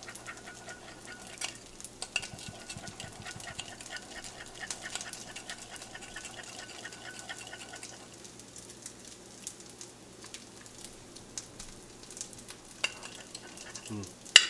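A spoon stirring and scraping a mayonnaise-and-vinegar coleslaw dressing in a ceramic bowl: a quick run of light clicks and scrapes, busier in the first half and sparser later.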